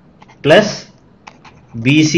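A voice speaks a short word about half a second in and starts speaking again near the end. In between come several faint, sharp ticks, a stylus tapping on a drawing tablet as handwriting is written.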